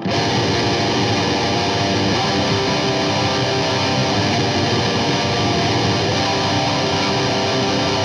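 Heavily distorted electric guitar playing a G minor dyad on the low strings (3rd fret low E, 1st fret A), picked continuously at a steady level.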